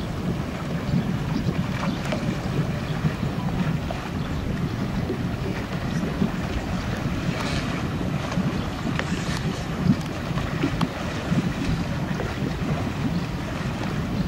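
Motorboat running slowly, with wind buffeting the microphone and the wash of water, a steady low rumble throughout.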